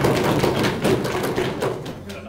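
Audience applauding by knocking on wooden desks: a dense patter of many knocks that thins out and dies away near the end.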